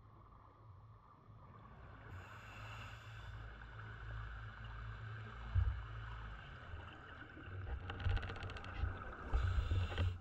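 Muffled underwater ambience picked up through a camera housing: a steady low rumble of water moving past, with a single thump about halfway through and a short spell of fine crackling ticks near the end.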